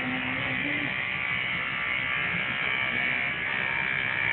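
Electric hair clippers buzzing steadily as they cut a toddler's hair short.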